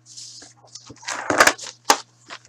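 Handling noises on a tabletop: a short rustle, then a quick cluster of knocks about halfway through and a sharp click near the end, over a low steady hum.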